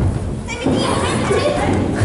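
Loud, overlapping voices, several people talking and calling out at once, starting abruptly with a low rumble.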